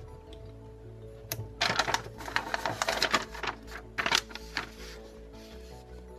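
Background music, with a run of clicking and rattling handling noise from about one and a half to four and a half seconds in, as a metal attachment on a plastic cordless saw is worked by hand.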